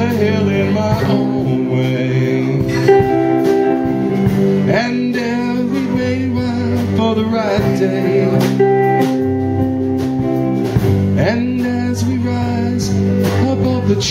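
Live rock band playing an instrumental passage: an electric guitar lead with bending, wavering notes over bass and a steady drum beat.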